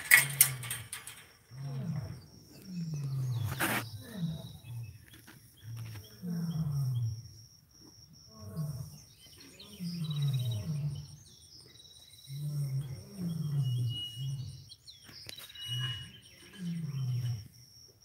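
A tiger giving a long series of short, low calls, each falling in pitch, about one a second.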